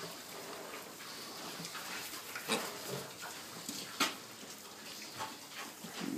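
A litter of piglets grunting softly while they feed and root in straw, with a few short sharp sounds about halfway through.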